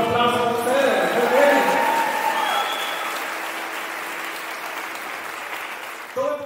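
Audience applause right after the music stops, with voices calling out in the first few seconds, slowly dying down.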